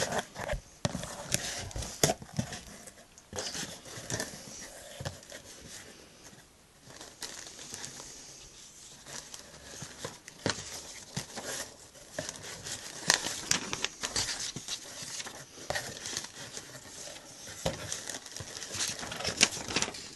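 Cardboard shipping box being unpacked by hand: a paper sheet and plastic wrapping rustling and crinkling, with irregular light taps and knocks from the box flaps.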